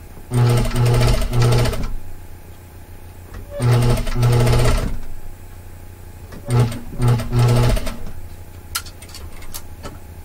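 Industrial straight-stitch sewing machine stitching fold-over binding onto a knit armhole in three short runs, each broken into two or three quick spurts, with pauses between while the fabric is eased under the foot. A few sharp clicks near the end.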